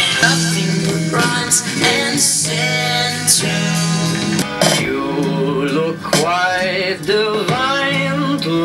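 Short clips of songs with singing and guitar, played through a Muzen mini portable Bluetooth speaker, one clip cutting to the next partway through.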